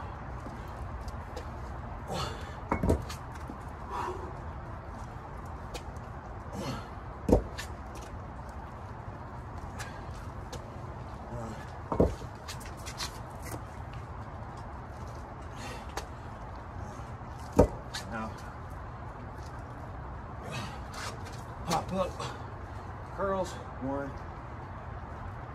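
Dumbbells knocking against the ground during dumbbell push-ups and rows: four loud sharp knocks several seconds apart and some lighter ones, with grunts and hard breathing near the end.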